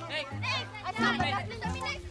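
Background music with a steady bass line under excited voices of children and young people shouting at a game.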